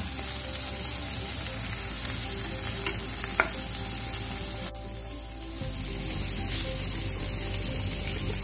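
Paneer cubes sizzling steadily as they fry in hot oil in a pan. A little past halfway the sizzle cuts off abruptly to a quieter, duller hiss.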